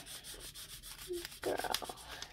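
Felt-tip highlighter marker scribbling back and forth on paper in quick, repeated scratchy strokes, crossing out a misspelled word.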